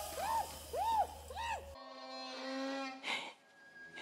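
A woman's muffled screams through a gas mask over her mouth, a run of short rising-and-falling cries. After about a second and a half they cut off abruptly into a steady held tone, and a brief noisy burst follows near the end.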